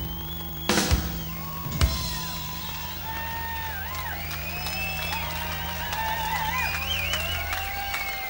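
A live rock band ends a song with a cymbal crash and a drum hit, while a low chord rings on and cuts off near the end. Over it the festival crowd cheers and whistles.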